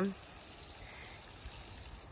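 Faint, steady outdoor background hiss with no distinct event; a spoken word trails off at the very start.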